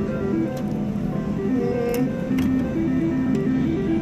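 Background music: a melody of held notes stepping up and down, with a plucked-string sound.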